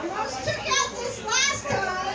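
A woman's voice through a handheld microphone, pitched high, rising in two strained cries about three-quarters of a second and a second and a half in.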